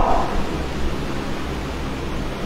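Steady hiss with a low rumble underneath: the background noise of a lecture's microphone and sound system with no voice on it.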